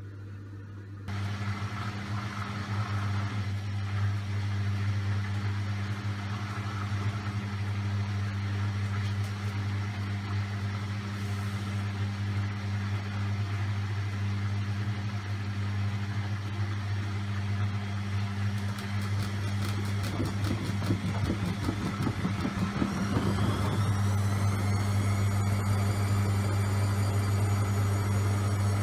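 Front-loading washing machine in its spin cycle: the motor hums steadily as the drum spins. Around the three-quarter mark the drum knocks and clatters briefly, then the motor's whine rises in pitch and levels off high as the spin speeds up.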